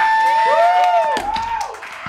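Live noise music: a held high whistle-like tone under several overlapping pitches that glide up and down in arcs. The held tone cuts off a little past a second in, and a few short clicks follow.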